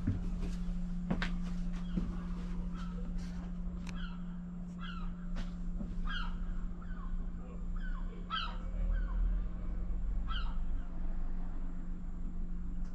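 Birds calling outside: about a dozen short, falling calls between about three and a half and ten and a half seconds in. Under them runs a steady low hum, with a few light clicks near the start.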